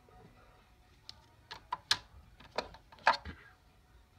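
Rigid plastic card holders clicking and tapping as they are handled, flipped and swapped: a string of short, sharp clicks, the loudest about two and three seconds in.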